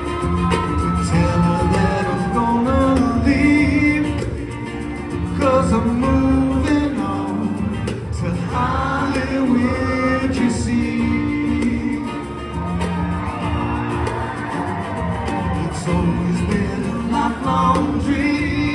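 Live acoustic band: two acoustic guitars strumming chords with singing over them, in a large hall.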